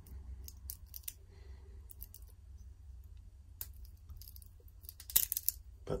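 Stainless steel dive-watch bracelet clasp and links being handled: scattered light metallic clicks, with a louder cluster of clicks about five seconds in.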